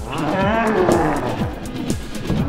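A wavering, animal-like monster roar that bends up and down in pitch for about a second, over dance music with a steady thumping beat.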